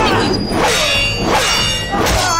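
Film score music mixed with thuds and a high ringing metallic sound that starts about half a second in and lasts over a second.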